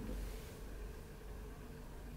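Quiet room tone: a faint, steady low hum and hiss with no distinct event.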